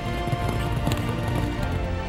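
Music with a horse's hooves clip-clopping over it.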